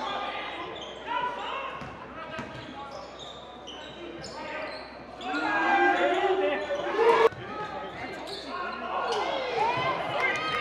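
Live gym sound of a basketball game: a ball bounced on the hardwood floor, with short squeaks and voices calling on the court. A loud bang comes about seven seconds in and cuts off sharply.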